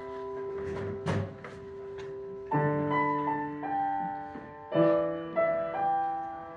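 Grand piano played slowly and softly: held chords, a new chord struck about two and a half seconds in and again near five seconds, with single melody notes ringing over them. A short rustling knock about a second in.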